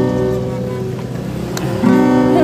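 Acoustic guitar chord ringing out and slowly fading, then a fresh chord strummed near the end.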